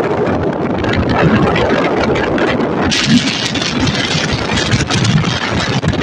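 A vehicle engine running on the move, with wind rushing on the microphone; the wind noise grows louder and hissier about halfway through.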